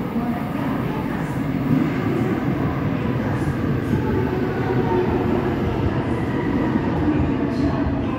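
Seoul Subway Line 5 train pulling into an underground station, its cars running past behind the platform screen doors with a steady running noise that swells slightly as it comes in.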